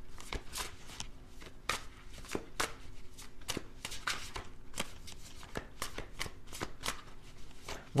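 Tarot deck being shuffled by hand: a run of irregular light clicks and flicks of cards, a few a second.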